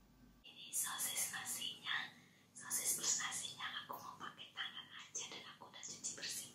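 A woman whispering close to the microphone, starting about half a second in.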